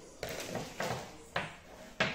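Thin plastic shopping bags rustling as hands rummage through them, in three or four short bursts, with light knocks of packaged groceries being handled.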